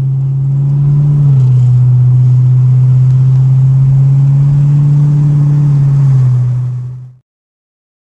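Car engine and road drone heard inside a moving car's cabin at a steady cruise: a loud, deep, steady hum that drops slightly in pitch about a second in and again near the end. It cuts off suddenly about seven seconds in.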